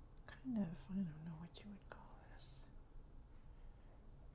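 Soft, whispery woman's voice murmuring briefly about half a second to a second and a half in, with a few faint clicks as a nail-polish brush is wiped against the glass bottle neck.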